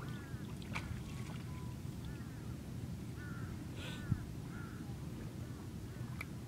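Birds calling in a run of short, arching calls over a steady low rumble, with a single sharp knock about four seconds in.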